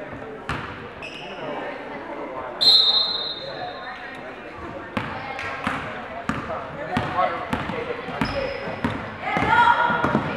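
Indoor basketball game in a gym: a referee's whistle blast about three seconds in, a basketball bouncing on the hardwood floor, and spectators' voices and shouting that grow louder near the end.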